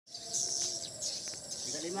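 A flock of swiftlets twittering: dense, high-pitched chirping from many birds at once.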